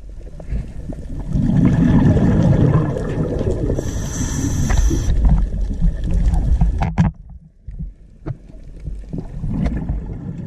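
Muffled rumble of water moving around a submerged camera, with scattered knocks and clicks and a brief hiss about four seconds in. It drops off sharply about seven seconds in, then builds again.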